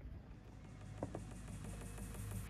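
Faint low rumble of outdoor background noise, with two soft clicks about a second in.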